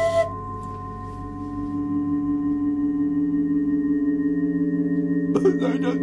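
A sustained ringing drone of several steady, overlapping tones. A higher tone drops out right at the start, and a lower tone swells in about a second in and holds.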